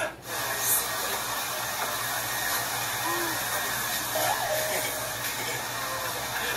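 A steady rushing noise, like blowing air, running evenly after a brief drop-out at the start.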